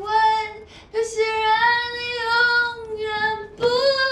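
Mobile phone ringtone of a high voice singing a song, a few long held notes with short breaks between them.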